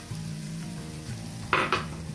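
Chicken and freshly added shredded cabbage and grated carrot frying in a wok, a steady sizzle. Two sharp knocks come about one and a half seconds in.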